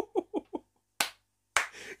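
A man laughing in short, quick bursts that trail off, then a single sharp hand clap about a second in.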